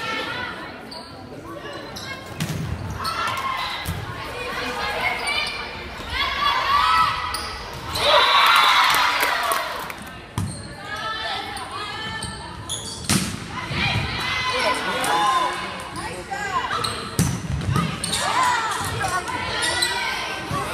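Volleyball rally sounds in a school gym: the ball being struck and hitting the hardwood floor at intervals, with voices calling out, all echoing in the large hall.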